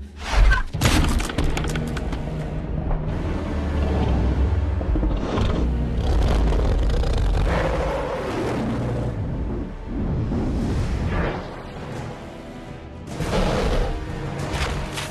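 Film soundtrack: a dramatic music score mixed with heavy booms and deep rumbling effects. A loud impact comes about half a second in.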